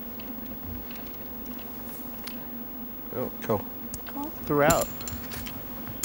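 A steady low electrical buzz runs throughout. A voice cuts in with a few short words about three seconds in, and again more loudly at about four and a half seconds.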